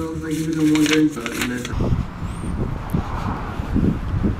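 Paper sticky notes rustling as a hand leafs through them, over a steady hum. About two seconds in, this gives way to uneven low rumbling of wind on the microphone outdoors.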